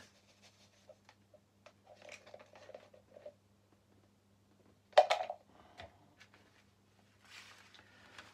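Faint clicks and rustles of small things being handled on a workbench, with one sharp tap about five seconds in, the loudest sound, over a faint steady low hum.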